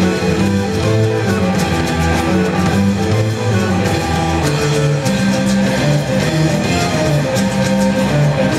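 Live band playing amplified music: electric and acoustic guitars over a bass guitar, steady and loud throughout.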